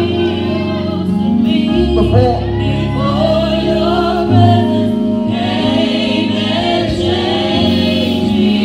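Gospel worship song: a man sings a slow, wavering melody into a microphone over sustained low chords that change every few seconds.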